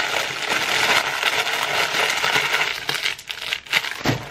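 Clear plastic medicine packaging being handled: continuous crinkling and rustling, with a few sharper clicks in the last second or so.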